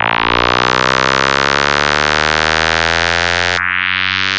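Darkpsy synthesizer breakdown with no drums: a dense pad of slowly sliding tones under a filter sweep that opens upward. The sweep restarts near the end.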